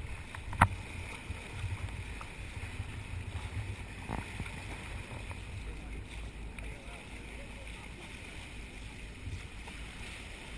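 Wind on the microphone and water rushing along the bow of a boat under way, a steady low rumble. A single sharp knock about half a second in.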